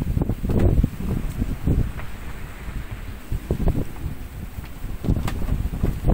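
Strong wind, around 25 knots, buffeting the microphone on a sailboat in a squall: a gusty, rumbling wind noise with surges about half a second in and again near the end.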